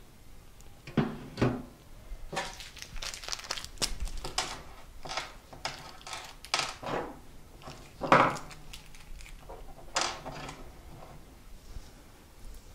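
A 3.5-inch hard drive and its cables being handled and set into the sheet-metal drive bay of a desktop tower: a string of clicks, knocks and scraping of metal and plastic, with the loudest knock about eight seconds in.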